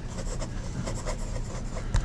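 A Penbbs 355 fountain pen's medium steel nib writing a word on paper: a faint run of short scratching strokes as the nib moves through the letters.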